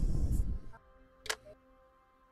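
Handling noise at the painting table: a low rustling and bumping that stops under a second in, then a single sharp click, over soft background music.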